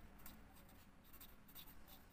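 Felt-tip marker writing on paper: faint, short scratchy strokes as a word is written out by hand.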